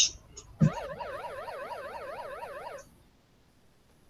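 Online quiz game sound effect: a short blip, then a thump and a tone that wavers rapidly up and down for about two seconds before cutting off, as the picked answer is checked before it is marked correct.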